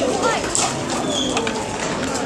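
Background chatter of several people talking, with bird calls mixed in.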